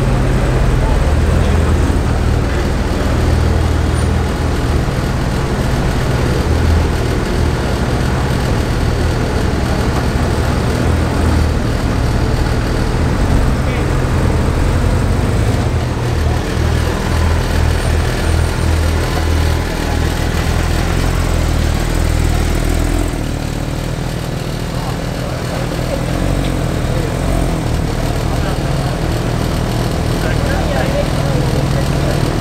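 Porsche 911 Speedster (991) 4.0-litre naturally aspirated flat-six idling and creeping at low speed in slow traffic, a steady low engine drone that eases briefly about three-quarters of the way in. People are talking around it.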